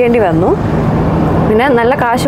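A woman talking, with a steady low rumble of car cabin noise underneath.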